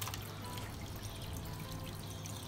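Aquarium filter outflow trickling steadily into the tank water, over a low steady hum.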